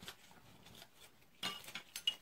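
Faint taps and clicks of small nail-art tools and bottles being handled on a work surface, with a brief cluster of louder clicks about one and a half seconds in.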